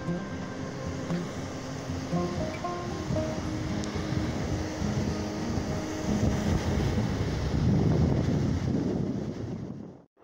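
Ocean surf breaking and washing over shoreline rocks, a noisy wash that builds to its loudest a little before the end, with background music whose held notes fade out about halfway through. Everything cuts off at the very end.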